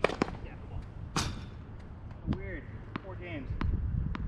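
Tennis ball struck by rackets on a hard court near the start, the loudest hit about a second in. Later come a few short voice sounds, and the ball is bounced on the court about every half second before a serve.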